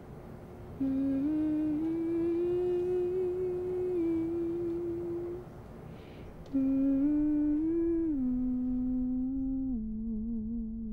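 A woman humming a slow, simple tune of held notes that move in small steps, in two phrases: the first begins about a second in, and after a short break the second starts past the halfway point and steps downward.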